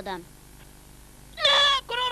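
A cartoon character's high-pitched voice crying out, starting about one and a half seconds in, after a line of dubbed dialogue ends.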